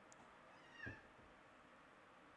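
A domestic cat gives one short meow a little under a second in.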